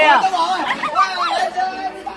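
Several young people's voices shouting and chattering over each other, loudest at the start.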